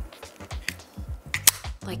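Background music with a steady bass line, over which come a few sharp small plastic clicks from handling a tiny action camera seated in its clip mount; the loudest click comes about one and a half seconds in.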